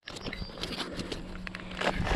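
Rustling and small knocks of a camera being handled and carried, with footsteps on grass. A faint steady low hum comes in about halfway through.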